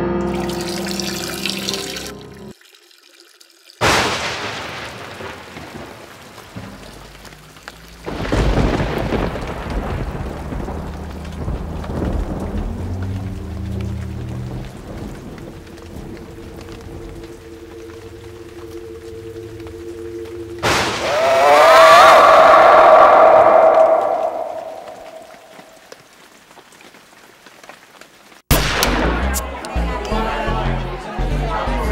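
Film soundtrack of music and added effects. A sudden crash that dies away slowly comes a few seconds in, after a short silence, and a second one about eight seconds in. Steady low held tones follow, then a loud swelling sound that fades out before the sound cuts back in near the end.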